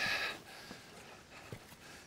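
A brief rustle for about half a second, then quiet with one faint click about a second and a half in: leather riding gear moving as the rider swings onto the motorcycle.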